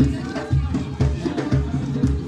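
Live band playing an upbeat dance tune: a bass line and hand percussion keeping a steady beat, with keyboard.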